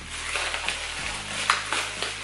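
Clear plastic bag crinkling and crackling as it is handled and pulled open, with a sharper crackle about one and a half seconds in.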